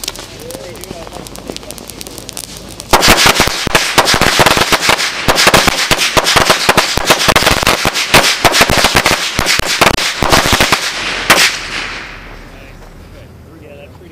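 A hanging string of 100 firecrackers going off, a rapid, uneven crackle of bangs that starts about three seconds in and runs for about eight seconds, ending with one last loud bang.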